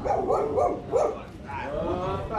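A person's voice calling out loudly in drawn-out, pitched calls, in two stretches, the second starting near the end.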